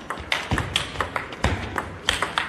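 Celluloid-plastic table tennis ball clicking in quick succession off rubber-faced rackets and the tabletop during a fast rally, with two low thuds underneath.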